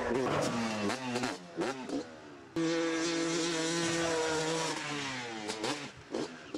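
Motocross bike engine revving hard, its pitch climbing and wavering through the first couple of seconds as the bike goes up the jump ramp. It then holds one steady high pitch for about three seconds before dropping away near the end.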